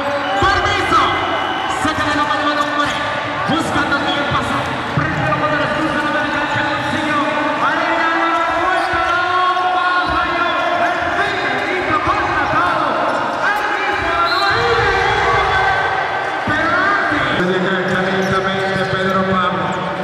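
Basketball bouncing on a hardwood gym floor during play, with voices talking throughout.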